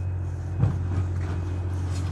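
A steady low engine-like rumble, with a brief thump just over half a second in.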